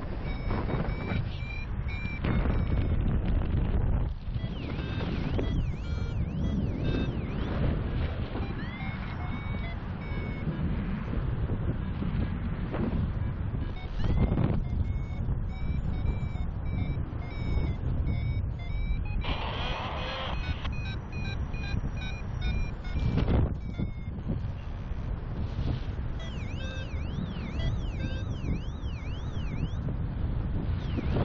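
Wind rushing over the microphone in paragliding flight, with a flight variometer beeping in short repeated tones that at times sweep rapidly up and down in pitch. A louder hiss lasts about four seconds a little past the middle.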